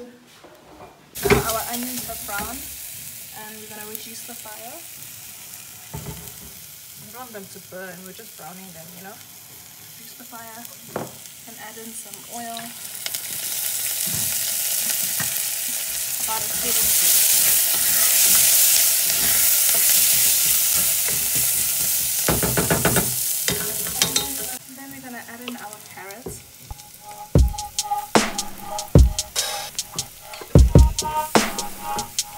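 Chopped shallots, chili and ginger sizzling in a stainless-steel pot while being stirred with a wooden spoon. The sizzle swells about halfway through and drops off suddenly, followed near the end by a run of sharp knocks as grated carrot is scraped into the pot.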